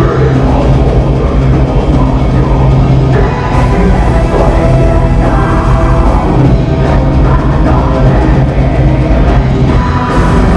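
Heavy metal band playing live, with electric guitars, bass, drum kit and keyboards, loud and dense with no break.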